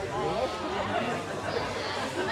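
Indistinct chatter: several people talking at once, with no single voice standing out.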